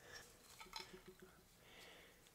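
Near silence, with faint light clicks and scrapes from a small die-cast metal toy van body and its plastic window insert being worked apart by hand.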